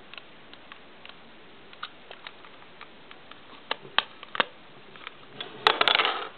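Scattered light clicks and taps of plastic Lego pieces being handled, with a few sharper clicks in the second half and a quick cluster of them near the end.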